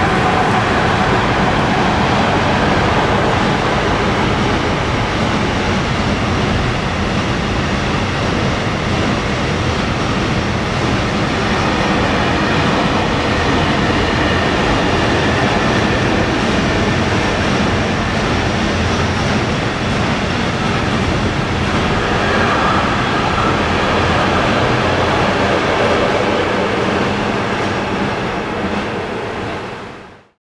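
A train rolling past close by: a steady, loud rumble of steel wheels on rail with wheel clatter as the wagons go by. It fades out at the very end.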